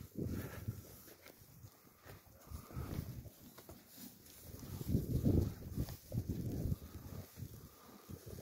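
Draft horses moving about close by on hay and snow, with irregular low sounds from the animals that are loudest about five seconds in.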